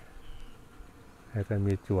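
Faint buzzing of flying insects in the background, with a man's voice starting about two-thirds of the way in.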